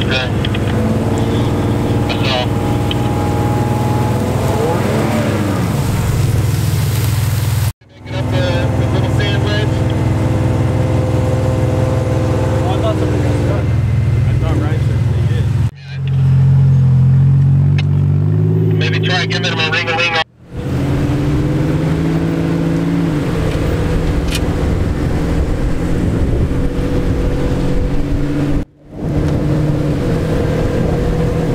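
Engines of lifted Toyota 4Runners running at low speed, their pitch rising and falling as they are revved. The sound comes in several short takes that cut off abruptly.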